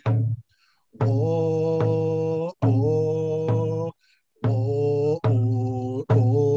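A man singing a chant in long held notes with short breaths between phrases, over a hand drum struck in a steady beat roughly once a second.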